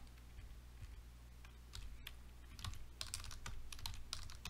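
Typing on a computer keyboard: a few scattered keystrokes, then a quicker run of typing in the second half, over a low steady hum.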